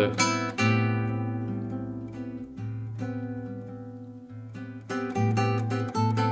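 Nylon-string classical guitar: an A minor seventh chord with added ninth is struck about half a second in and left to ring, fading slowly for about four seconds. Near the end, fresh notes are plucked over it, the melody played on top of the chord.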